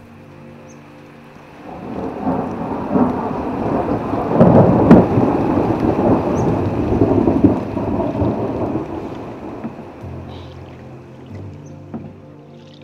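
A long roll of thunder that builds about two seconds in, peaks with a sharp crack around the middle, and rumbles away over several seconds.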